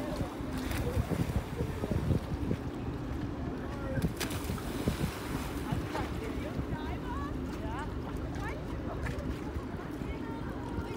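Wind buffeting the microphone over lapping water, with faint distant voices.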